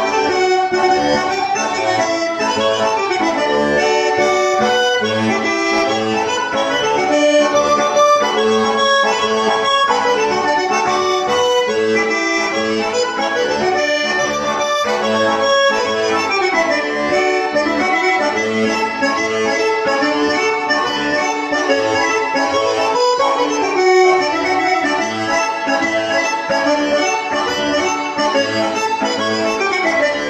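Diatonic button accordion (organetto) played solo: a fast polka tune on the treble buttons over a regular bass beat.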